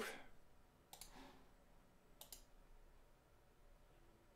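Near silence with a few faint clicks at a computer: one about a second in, then a quick double click a little after two seconds.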